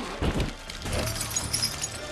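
Film sound effects of ice cracking and shattering, with sharp impacts in the first half-second and a faint high tinkle later, over music.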